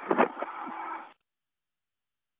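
Tail end of a space-to-ground radio transmission: a voice and hiss through the narrow radio link, which cuts off suddenly about a second in, leaving dead silence.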